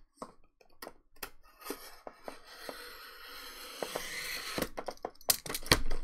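A utility knife slicing along the seal of a cardboard box: a scratchy hiss that builds over a couple of seconds, then several sharp clicks and knocks from the cardboard as the box is handled.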